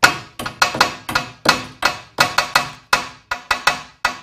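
A fast, uneven run of sharp knocks, about four a second, each ringing briefly as it dies away.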